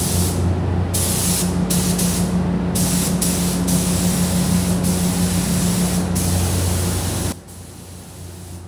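Gravity-feed paint spray gun atomising paint onto a motorcycle fuel tank: a steady hiss of compressed air, cut off briefly several times in the first three seconds as the trigger is released, over a low steady hum. Both stop abruptly about seven seconds in.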